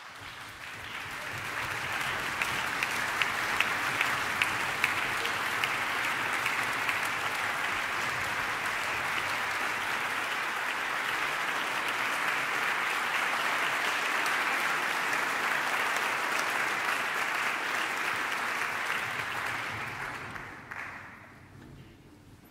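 Concert audience applauding. The applause starts suddenly and builds over about two seconds, with a few sharp individual claps standing out early on. It then holds steady and dies away about twenty seconds in.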